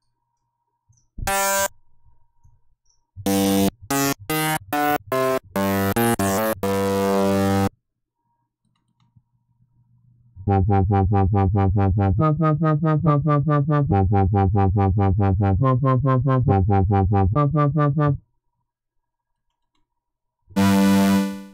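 Kilohearts The One subtractive synthesizer playing bass presets as they are auditioned: a short single note about a second in, then a run of separate bass notes, and from about ten seconds in a fast, evenly pulsing bass pattern that cuts off about two seconds before the end.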